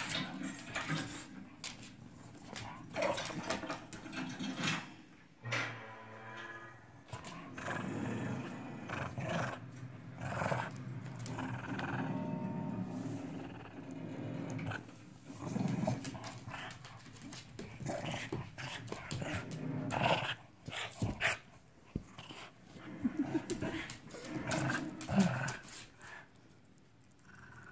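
Small terrier-type dog growling playfully on and off while biting and tugging at a plush slipper, with short scuffs and clicks throughout.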